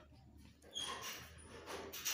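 Faint scratching of a pen drawing a plus-minus sign on paper, with a couple of short high squeaks about a second in and near the end.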